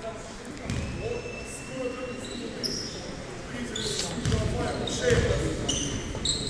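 A basketball bouncing on a hardwood court a few times, the strongest bounces about four and five seconds in, in a large echoing hall with voices in the background.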